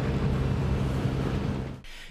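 WaterCar Panther amphibious vehicle running on water: a steady engine drone under a hiss of spray and wind, fading out near the end.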